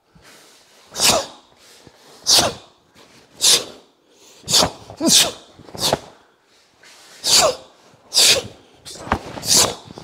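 Sharp, forceful hissing exhalations, about one a second, from a karateka timing his breath to each strike and block of a fast, full-power kata. A few of them carry a short voiced grunt.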